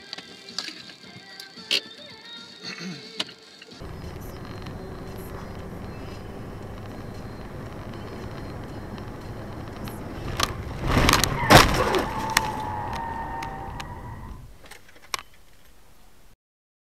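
Car interior heard through a dashboard camera: steady road and engine noise while driving. About eleven seconds in comes a cluster of loud sharp knocks and bangs, followed by a steady, slightly falling tone for a second or two.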